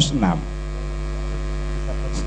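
Steady electrical mains hum, a low buzzing drone. A word trails off at the very start, and the hum then carries on unchanged with no other sound over it.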